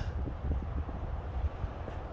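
Wind buffeting the phone's microphone outdoors: an uneven low rumble with a faint hiss above it.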